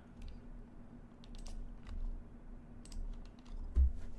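Scattered light clicks and taps from a computer keyboard and mouse in use, with a low thump near the end and a faint steady hum underneath.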